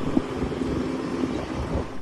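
Engine of a tracked skid-steer loader running steadily with a low hum under a broad rumble, cutting off just before the end.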